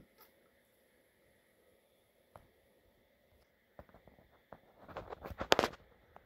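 Quiet room with scattered sharp clicks and light knocks, and a quick run of them about five seconds in.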